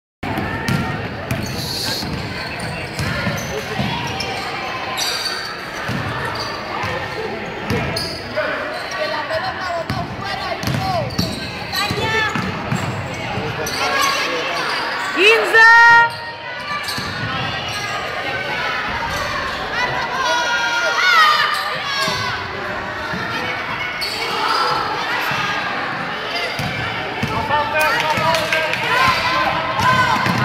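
Live basketball game in a large gym: a ball bouncing on a hardwood court, running feet and girls' and coaches' voices shouting, echoing in the hall. A brief, loud pitched blast about halfway through.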